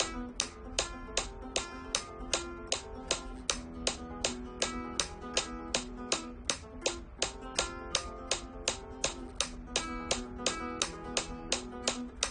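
Flamenco guitar played fingerstyle in a fast, even, repeating arpeggio on the p-i-m-a-m-i pattern over a held chord, with sharp metronome clicks about two and a half a second. The click tempo steps up from 150 to about 170 BPM across the stretch.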